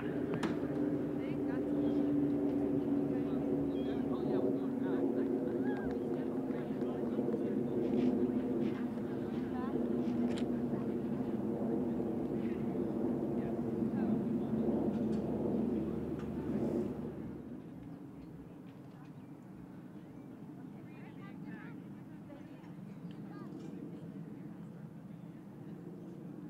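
A steady engine drone with a low hum, loud for most of the first two-thirds and dropping away about 17 seconds in, leaving a quieter outdoor background.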